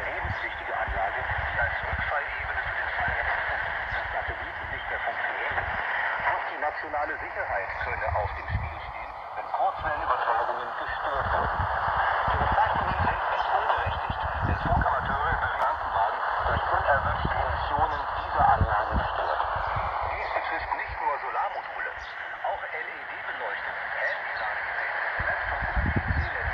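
A shortwave AM broadcast of Radio DARC on 6070 kHz: a voice coming through the small speaker of a Kenwood TH-D74 handheld receiver fed by a tuned ferrite rod antenna. The sound is narrow and radio-like, with dips drifting slowly through the higher tones.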